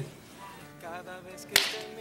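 A small portable radio playing faint singing as it is tuned back to a station, with a sharp crack about one and a half seconds in.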